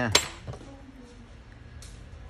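A short spoken syllable, then one sharp click of a hard object knocking. After it a faint steady low hum runs on, with a faint tick near the end.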